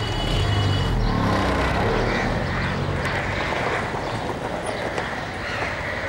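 A small car's engine running and pulling away, its low rumble swelling over the first second or two and then going on steadily with road noise.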